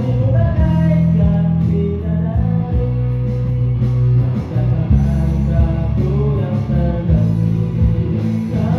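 Live busker band music: a man singing a melody over amplified guitar, with a strong bass line underneath.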